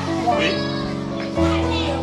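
Background music with sustained chords under children's voices; the chord shifts, with a deeper bass, about one and a half seconds in.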